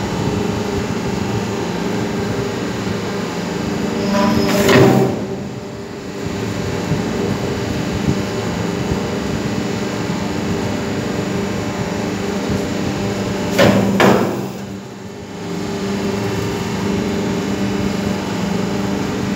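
Double-die hydraulic paper plate making machine running, its motor and hydraulic pump humming steadily. Twice, about nine seconds apart, the sound surges and rises in pitch as a press stroke forms the plates, then the hum dips briefly.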